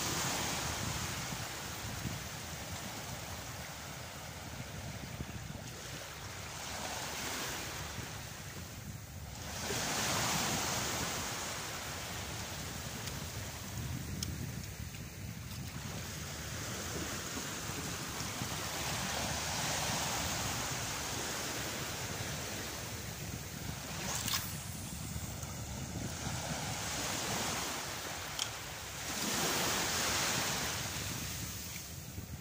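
Sea surf breaking on a sandy beach, swelling and fading every several seconds, with wind buffeting the microphone. Two brief sharp clicks sound in the second half.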